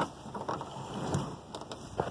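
Faint rustling handling noise with a few light clicks, one sharper click at the very start, from a phone being shifted about in the gap beside a van's sliding-door hinge.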